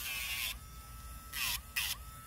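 Battery-operated Dremel rotary tool with a sandpaper head, on its low setting, running with a steady whine while sanding a dog's toenail. There are short raspy grinding touches at the start and twice in the second half. The pitch dips briefly each time the nail is pressed into it.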